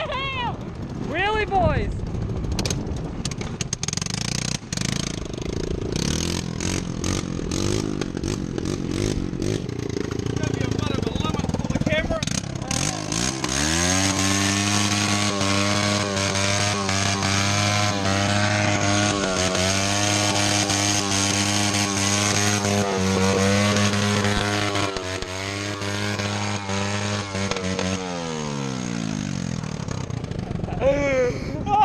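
Quad bike (ATV) engine running close by: rough and uneven for the first dozen seconds, then revving up about 13 s in, held at steady high revs for about fifteen seconds, and winding down near the end.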